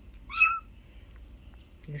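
A young kitten gives one short, high-pitched mew about half a second in, gliding slightly upward at the start.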